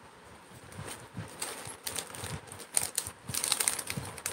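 Handling noise: irregular light clicks and rustles from objects being moved by hand, sparse at first and busier in the last second or so.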